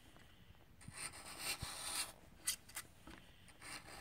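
Sharp low-angle (17-degree bevel) bench chisel paring soft pine by hand: a faint scraping slice about a second in as the blade lifts a curled shaving, then a light click or two.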